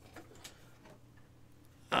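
Faint handling noise: a few soft clicks and taps as a circuit board and its cardboard packaging are moved about by hand.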